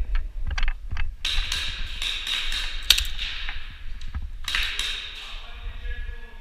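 Airsoft guns firing: a few sharp single clicks, then a rapid burst of clicking that lasts about three seconds, and a second, shorter burst about four and a half seconds in.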